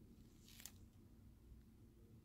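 Near silence: room tone with a faint steady hum, and one brief soft rustle of a clear plastic shrink bag being handled about half a second in.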